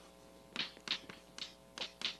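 Chalk striking and scratching on a blackboard as letters are written: about six short, sharp strokes starting about half a second in, over a faint steady room hum.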